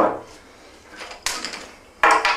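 A plastic screw cap being twisted off a sample bottle of cloudy, just-fermented wine, with a short sharp rasp a little over a second in.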